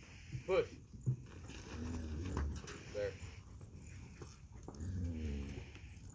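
Beef cows lowing: two short, low moos, one about two seconds in and one about five seconds in.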